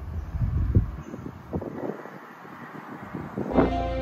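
Wind buffeting the microphone, heavy in the first second and then lighter. About three and a half seconds in, new-age background music with sustained tones begins.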